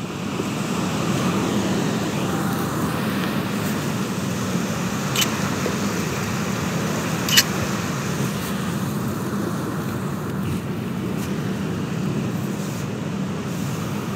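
Steady rush of ocean waves breaking, with two short clicks a couple of seconds apart midway through.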